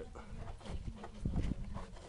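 Light knocks and scraping as a small rock is pushed through a rust hole in a car's steel rocker panel, over low rumble from the phone being handled.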